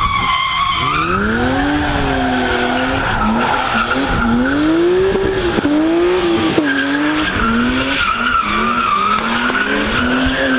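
BMW E36 M3's 3.0-litre S50B30 straight-six engine revving up and down repeatedly as the car drifts sideways, with a wavering high tyre squeal running underneath. The revs climb about a second in, then swing up and down several times.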